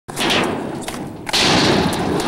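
Skateboard wheels rolling on concrete, a steady rolling noise that gets suddenly louder just over a second in.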